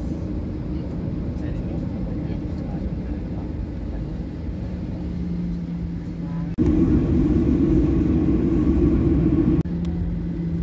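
Steady rumble of a Boeing 737 airliner's jet engines heard inside the cabin as the plane moves on the ground toward takeoff. About two-thirds in, the rumble jumps sharply louder and rougher for about three seconds, then drops back just as suddenly.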